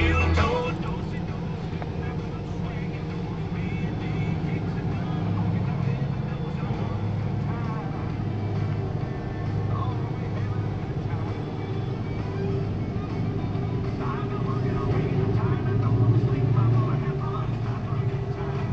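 A steady low diesel rumble from a pair of EMD GP9RM locomotives hauling a train of tank cars, swelling louder near the end.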